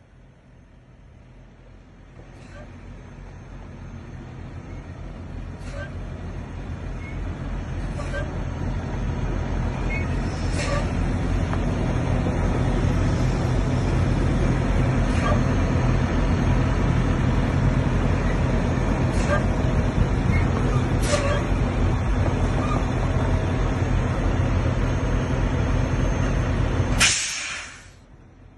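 Heavy diesel engine of a semi truck idling with a steady low rumble, growing louder over the first dozen seconds and then holding steady, with a few short sharp clicks over it and a loud burst just before it cuts off near the end.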